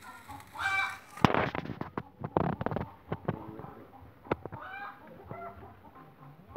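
Sheet of newspaper rustling and crackling in sharp bursts as it is handled and spread out, loudest just after a second in, with a few lighter crinkles and clicks afterwards. Two brief animal calls sound, one just before the rustling and one near the end.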